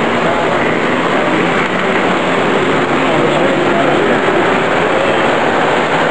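Steady background chatter of an exhibition crowd, mixed with the running rattle of a tinplate O gauge model train as it passes close by on the track.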